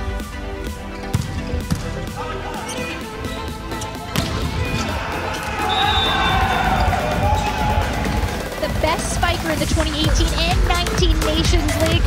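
Volleyball hit sharply a few times in the first couple of seconds of a rally, under background electronic music with a steady beat. Then players' voices shout as the point is won.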